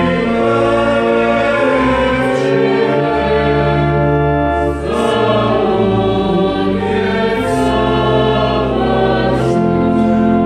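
Mixed choir singing a Croatian Epiphany carol in parts, over sustained organ accompaniment with steady low notes.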